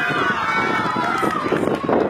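Street football players calling and shouting over one another, with one raised call held through about the first second.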